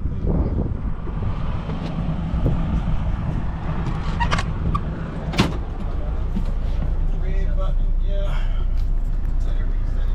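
Tour bus running with a low, steady rumble, with a couple of sharp knocks about four and five seconds in.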